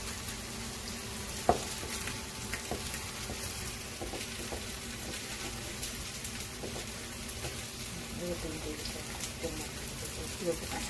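Potato and vegetable pancakes frying in shallow oil in a nonstick pan, a steady crackling sizzle, as they are pressed down with a wooden spatula. A single sharp knock about a second and a half in.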